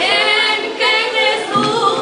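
Two women singing a duet together into a microphone, their voices sustained and melodic with steady loudness.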